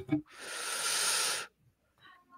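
The tail of a laugh, then a long breathy exhale of about a second that swells and fades, heard as a hiss.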